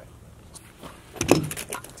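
A handgun being handled: a quick run of sharp metallic clicks and rattles a little past the middle, after a quiet stretch.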